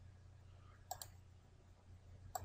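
Near silence over a low steady hum, with a computer mouse click, heard as two quick ticks, about a second in.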